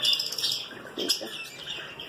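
Small cage birds chirping: a run of short, high chirps.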